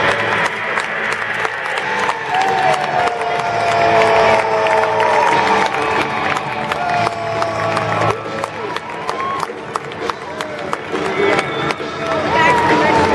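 Crowd noise from spectators in a large stadium, with music playing and scattered cheering.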